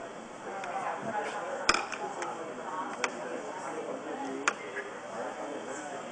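Indistinct background conversation, with three sharp clinks spread through it, the loudest about two seconds in.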